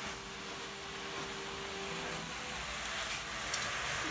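Ground meat sizzling steadily in a frying pan on a gas hob.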